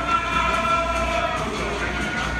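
Many voices singing together, holding a long chord with several notes sounding at once. The chord thins out about a second and a half in.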